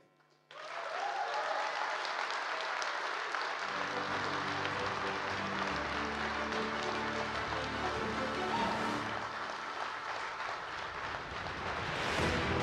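Audience applause starting about half a second in, with music coming in under it a few seconds later and carrying on.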